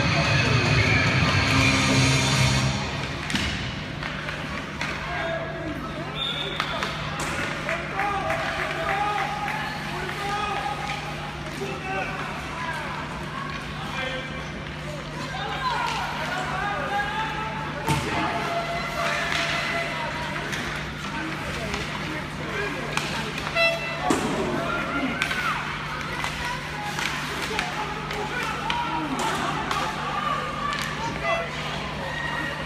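Ice rink game sounds: arena music with guitar that stops about two to three seconds in, then indistinct shouts and calls from players and spectators with occasional sharp knocks of sticks and puck, over a steady low hum.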